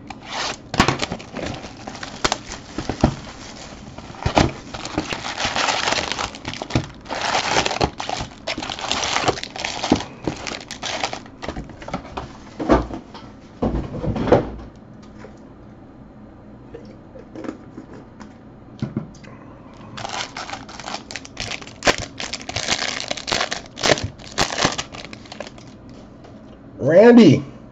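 Foil-wrapped trading card packs crinkling and rustling as they are handled and pulled from a hobby box. There is a quieter stretch in the middle, then dense crinkling again, as a pack wrapper is torn open near the end.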